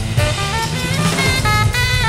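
Live jazz: a saxophone playing a quick run of short notes over upright bass and drums.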